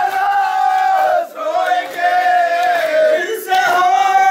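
Men chanting a noha, a Shia lament, in unison into a microphone. The phrases are made of long held notes, with short breaks about a second in and again near the end.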